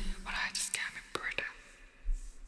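A soft whispered voice close to a microphone, a few short hissy bursts with small mouth clicks in the first second and a half, then fading to near quiet.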